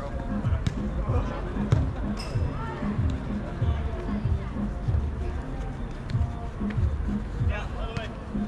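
Music with a steady beat of about two thumps a second and a singing voice, with a few sharp knocks, the loudest just under two seconds in.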